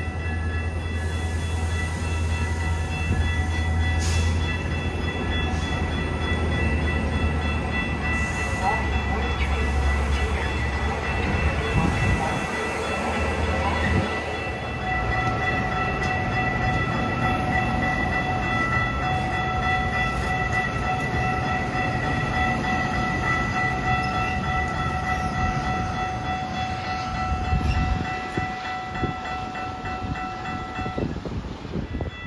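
A Metra bilevel commuter train rolling along the platform and pulling away: a steady rumble of the cars on the rails, heaviest in the first half and easing after about fourteen seconds. Several steady high ringing tones run over it.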